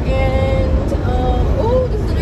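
Loud, steady road and wind noise inside a car cabin at expressway speed. Over it a woman's voice holds long sung notes that slide in pitch near the end.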